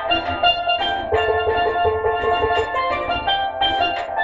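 Steel pan played with sticks: a reggae melody of quick struck and ringing notes, over a low accompaniment underneath.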